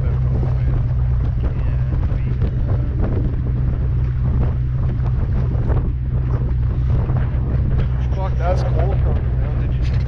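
Jet boat under way, its 6.2-litre V8 engine running with a steady low drone, while wind buffets the microphone and water rushes past the hull.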